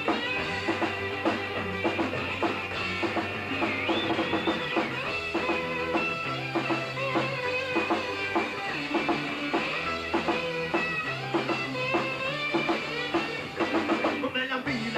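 Live rock band playing an instrumental passage: electric guitars over a drum kit keeping a steady beat, with low bass notes moving underneath. A guitar line bends in pitch about four seconds in.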